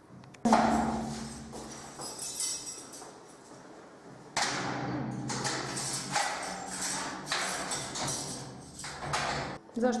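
A loud bang about half a second in. Later comes a run of metallic clicks, knocks and rattles from keys and the lock of a steel-barred cell door being worked to open it.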